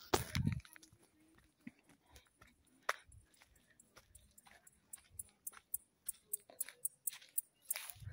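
Dry brush and twigs crackling and snapping as someone climbs through bushes: a louder rustle right at the start, then scattered sharp cracks that come thicker in the last few seconds.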